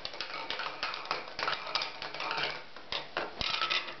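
A white plastic slotted spoon clattering and tapping against the inside of a bowl in quick, irregular clicks.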